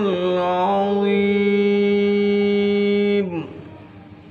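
A man's voice reciting the Quran in melodic tilawah style, holding one long steady note that falls away and ends a little over three seconds in.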